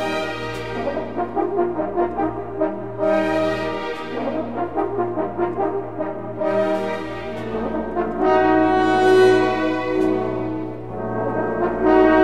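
Background music of brass instruments playing slow, held chords, growing louder about eight seconds in.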